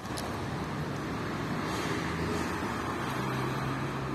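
Steady road traffic noise from passing cars, a continuous rushing hum with a low engine drone.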